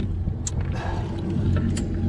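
Boat's outboard engine idling with a steady low hum, with two short clicks, one about half a second in and one near the end.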